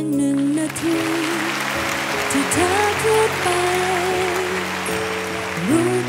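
A woman singing a slow Thai pop ballad with a live band including keyboard, over steady audience applause.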